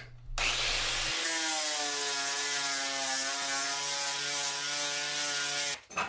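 Angle grinder with a sanding disc running steadily against a steel car fender, stripping paint and rust to bare metal. Its whine dips slightly in pitch about a second in, and it cuts off near the end.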